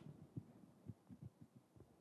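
Near silence: room tone with a scattering of faint, soft low thumps.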